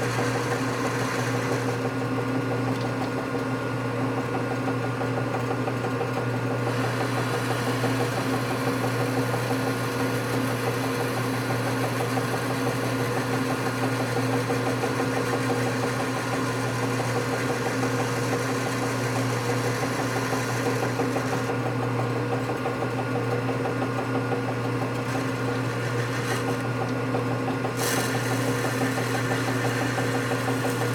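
Metal lathe running at a steady speed, its motor and gearing giving a constant hum, while the tool is fed into a part turning in the chuck.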